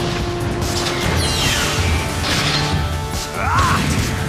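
Cartoon soundtrack: dramatic background music with falling whoosh sound effects about a second in and again a little after the middle, and a short rising swoosh near the end.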